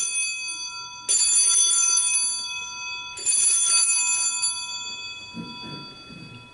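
Altar bells rung for the elevation of the host at the consecration: three peals about two seconds apart, one just before and two more about one and three seconds in, each a bright high jangle that rings on and fades away.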